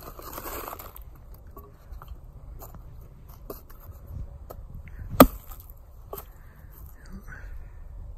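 A single sharp axe chop about five seconds in: a Council Tool Woodcraft Camp-Carver hatchet (Scandi-ground 5160 carbon steel head on a hickory handle) biting through a spongy dead branch in one stroke. A few lighter knocks and rustles come around it.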